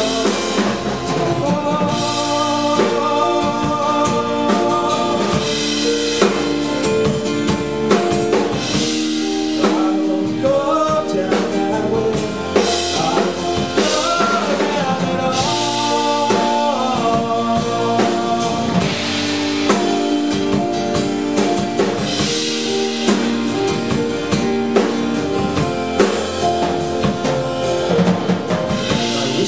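A live band performance: an acoustic guitar strummed, a drum kit with cymbals keeping a steady beat, and a man singing over them.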